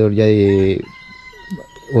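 A rooster crowing faintly, one long call held at a steady pitch through the second half, under the tail end of a man's speech.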